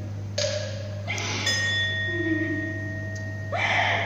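A single struck, bell-like metal tone from the opera's accompanying ensemble rings out about one and a half seconds in and holds steadily for around two seconds. Fuller music comes back in near the end, and a steady low hum runs underneath.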